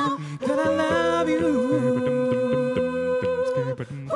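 A cappella voices singing soul harmony: a held chord of backing voices over a sung bass line that moves in short repeated notes, with no lead lyric. The voices break off briefly just after the start and again just before the end.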